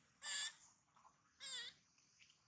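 Two short, pitched macaque calls about a second apart, the second one wavering in pitch.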